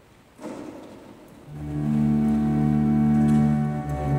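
Church organ beginning to play about a second and a half in, holding a soft sustained chord for a short meditative interlude. Just before it, a brief faint noise.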